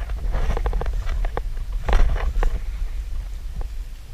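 Wind rumbling on the microphone, with a run of irregular clicks and rustles through the first half, the loudest about two seconds in.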